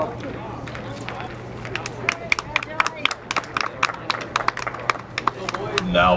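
Scattered hand claps from spectators, several a second for about three and a half seconds, over faint crowd voices and a low steady hum.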